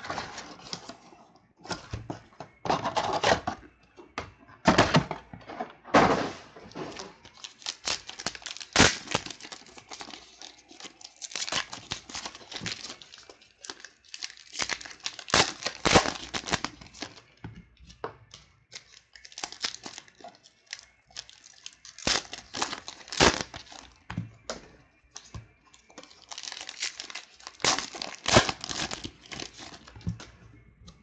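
Trading-card pack wrappers of 2014 Panini Prestige football being torn open and crinkled by hand, with cards handled and set down. Irregular bursts of crackling and tearing come and go throughout.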